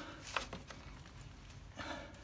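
Faint clicks and light knocks from hands working a motorcycle's rear axle and chain adjuster during wheel refitting: two clicks in the first half second, a fainter one after, and a short scrape near the end.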